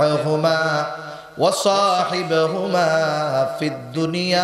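A man's amplified voice chanting in a melodic, sing-song style, holding long notes, with a sharp rise in pitch about a second and a half in.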